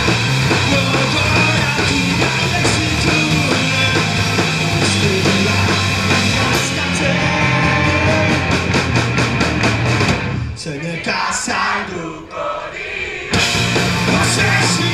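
Live loud rock played by a three-piece band of electric bass, electric guitar and drum kit, with a quick even drum pulse building for a few seconds. About ten seconds in the full band drops out to a sparse, quieter break, then crashes back in just before the end.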